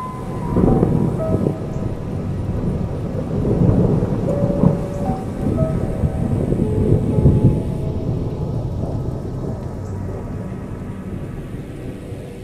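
Thunder rumbling in long rolls, swelling louder several times and slowly fading, with soft music playing over it.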